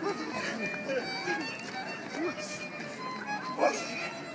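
Fiddle playing a dance tune for rapper sword dancers, with people talking over it.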